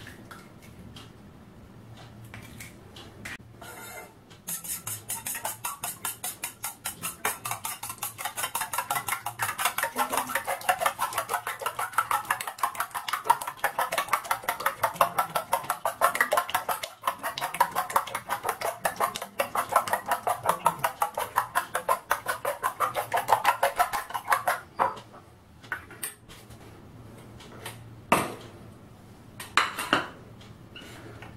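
Metal spoon beating raw eggs in a small stainless steel bowl: rapid, rhythmic clinking against the bowl for about twenty seconds, starting a few seconds in, then stopping. A couple of single knocks near the end.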